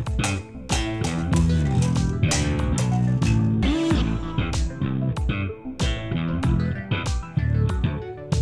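Synthwave track with a kit drum beat and a prominent electric bass line from a five-string Ibanez bass, the notes moving up and down in the low end.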